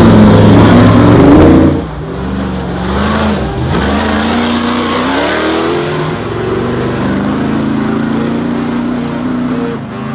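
Ultra4 off-road race car engines revving hard, loud for the first couple of seconds. After a sudden drop, a quieter engine keeps rising and falling in pitch as the throttle is worked.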